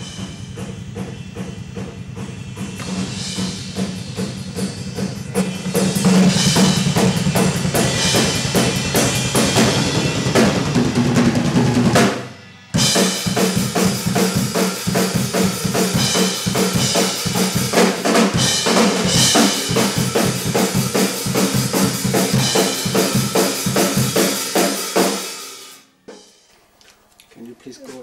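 Metal drum kit played fast in the live room, with rapid double bass drum strokes under snare and cymbals. Quieter and duller at first, louder from about six seconds in, with a brief stop near the middle, and it ends a couple of seconds before the end.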